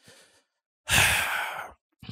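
A person's breathy sigh, starting about a second in and lasting just under a second, fading out.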